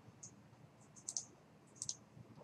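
Faint computer mouse clicks: a light click, then two quick press-and-release clicks about a second in and two more near the end.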